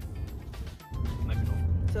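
Low rumble of road and engine noise inside a moving car, with music playing over it. The sound drops away briefly just under a second in.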